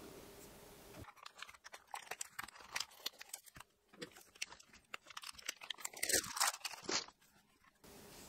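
Clear plastic bags around filament spools crinkling and crackling in irregular bursts as they are handled. The sound cuts off about a second before the end.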